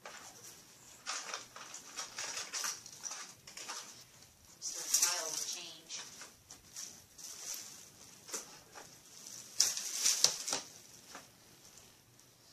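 Hands rummaging through items in a plastic storage bin: irregular rustling and small knocks, with louder rustles about five and ten seconds in.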